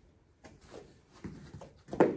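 A few soft thumps and scuffs of a person getting up off a grappling dummy on foam floor mats, with a sharper thump at the very end.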